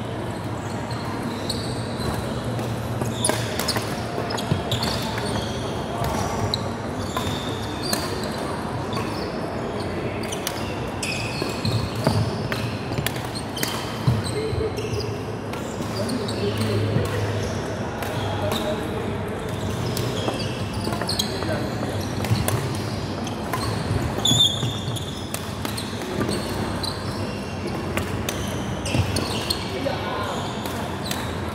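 Badminton rally in a large, echoing indoor hall: sharp racket hits on the shuttlecock and footfalls on the wooden court, with short high squeaks scattered through.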